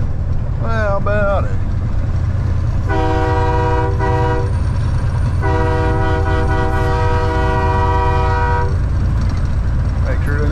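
A multi-tone air horn sounds two blasts, a short one about three seconds in and a longer one of about three seconds a moment later, each a steady chord of several notes. Underneath is the steady drone of the semi truck's engine and road noise heard inside the cab.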